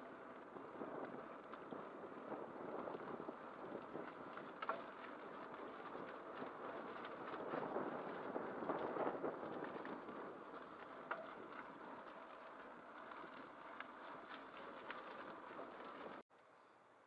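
Bicycle ridden along a paved path: steady tyre and wind noise with scattered small rattles and clicks from the bike, swelling slightly midway.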